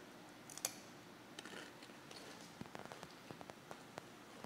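Faint chewing of a mouthful of food, heard as scattered small clicks and crackles.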